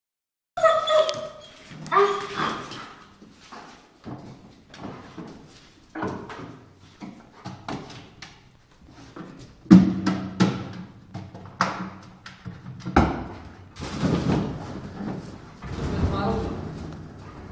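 A German Shepherd-type search dog working a small tiled room, with irregular knocks, thuds and scrapes as it noses and paws at a wooden armchair and moves over the hard floor. There are short pitched voice-like calls in the first two seconds, and the loudest knocks come near the middle and about three seconds before the end.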